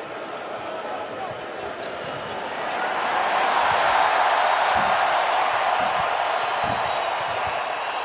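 Noise of a large arena crowd, many voices blending into a dense wash that swells much louder about three seconds in. A couple of low thuds sound near the middle.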